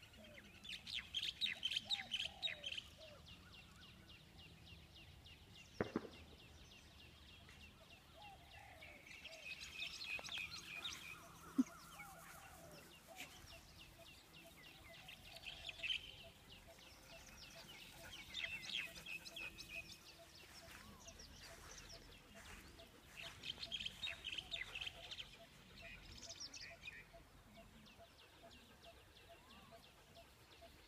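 Birds chattering, heard faintly in about half a dozen short bursts of rapid high notes with quiet between them. Two sharp clicks come in, about six seconds in and again near the twelve-second mark.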